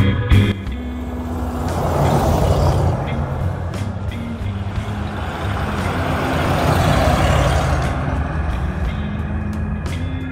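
1952 Lincoln Capri's 317 cubic-inch V8 driving past and away, its engine and tyre noise swelling twice, under a bed of background organ music.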